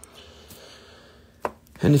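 A sharp single tap on a tabletop about one and a half seconds in, as a rough opal in a plastic zip bag is set down, with a fainter tick about half a second in.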